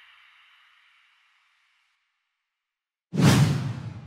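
Logo-animation whoosh sound effects: a reverberant tail fades out over the first second and leaves silence, then about three seconds in a loud new whoosh with a deep low end comes in suddenly and dies away.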